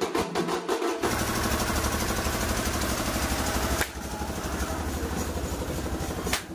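A group of drums beaten with sticks in a fast, even rhythm of about six strokes a second, cut off about a second in by a steady, dense noise with a strong low rumble that changes character near four seconds.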